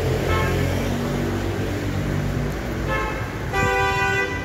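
Road traffic heard from inside a moving car, with a few short car-horn toots, the longest near the end.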